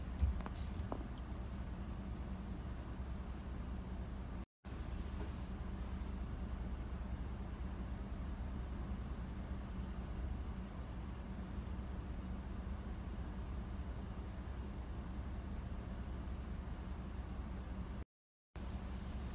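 Steady low hum inside a car cabin, with a short click right at the start. The sound cuts out completely for a split second about four and a half seconds in.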